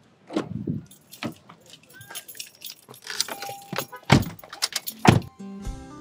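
Car door handled and opened and shut: a series of clicks and knocks, with two heavier thuds about four and five seconds in. Music comes in near the end.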